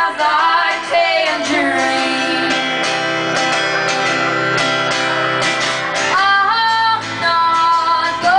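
Live folk song: a female voice singing over strummed acoustic guitar and a Nord Electro 3 keyboard, with long held chords between the sung lines.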